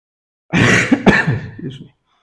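A man coughing twice, loud and close to the microphone, starting about half a second in.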